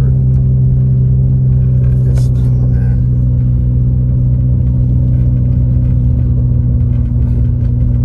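Steady low drone of a car's engine and tyres heard from inside the cabin while driving on a snow-covered road.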